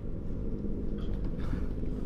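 A steady low rumble, like a background engine hum, with faint voice sounds about a second in.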